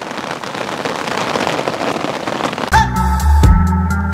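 Steady rain falling on a fishing umbrella and wet ground, a dense hiss. About two-thirds of the way in, background music with deep bass notes and a light beat comes in over it.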